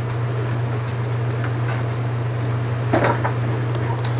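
A few faint clicks and knocks of a plastic push-walker toy being handled, over a steady low hum.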